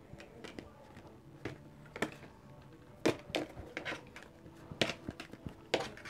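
A deck of cards being cut and handled over a table: an irregular run of soft slaps and clicks of card stock, with the sharpest ones about two, three and near six seconds in.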